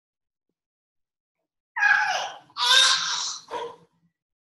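A woman breathing hard through dumbbell deadlift repetitions: three loud, breathy exhalations in quick succession, beginning a little before halfway in.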